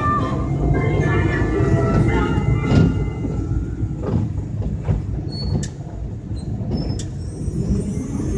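Steady low rumble and road noise of a moving vehicle heard from inside it, with a couple of sharp clicks in the second half.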